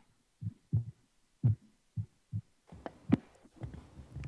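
About six short, dull thumps spaced unevenly over two and a half seconds, then two sharper clicks about three seconds in.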